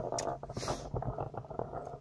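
Handling noise as a camera is picked up and repositioned: small knocks and rubbing, with a brief rustle about half a second in.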